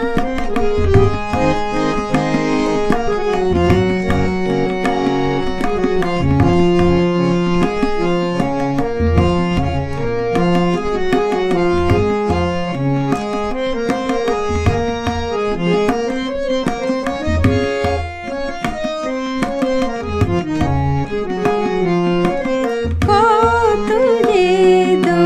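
Instrumental interlude of a Bengali song: tabla keeps a steady rhythm under a melody of held, stepping notes on a reed-like instrument. A woman's singing comes back in near the end.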